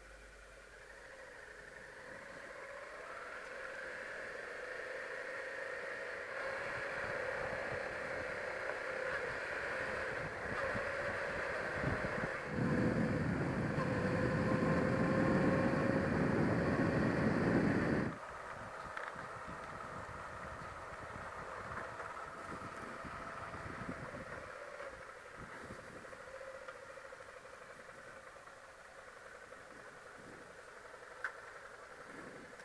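Motorcycle engine running while riding a dirt road, its pitch climbing slowly over the first dozen seconds. A loud rushing noise joins in about twelve seconds in and cuts off suddenly at eighteen seconds. After that the engine runs more quietly.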